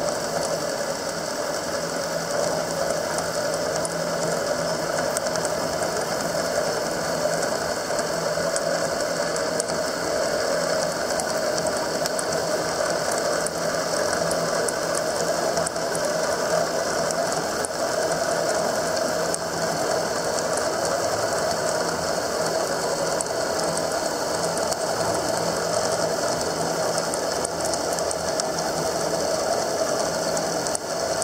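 Milling machine running under power table feed, its half-inch four-flute high-speed steel end mill cutting a slot in mild steel at about 12 5/8 inches per minute. A steady mechanical running sound with faint ticks throughout.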